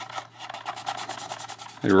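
Scratchy rubbing of a hard plastic model fuselage shell being handled and slid against the parts beneath it, a fast run of fine scrapes.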